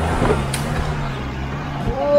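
Mahindra Bolero's diesel engine running steadily under load as the 4x4 climbs a muddy dirt slope, with a brief knock just before the end.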